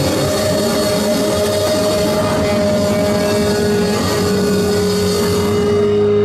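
Live rock band with distorted electric guitars holding long sustained notes over a wash of cymbals. Near the end the cymbals drop away and one held guitar note rings on.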